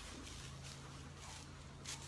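Faint, irregular soft sucking and chewing noises from a calf mouthing another calf's ear, over a steady low hum.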